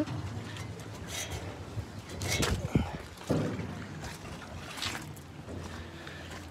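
A handheld phone bumped and rubbed as someone climbs down off a hatchery truck: several short knocks and rustles over a low steady hum.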